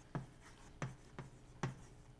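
Chalk writing on a blackboard: a handful of short, sharp chalk strokes and taps, about four in two seconds, as letters are written.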